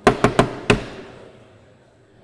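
Four sharp, loud knocks in quick succession close to the microphone, the last dying away over about a second in the hall's echo.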